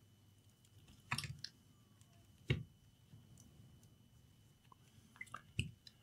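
Faint plastic knocks and clicks of a laptop battery pack being handled and set back into the open laptop chassis: a short cluster about a second in, a single knock midway, and small clicks near the end.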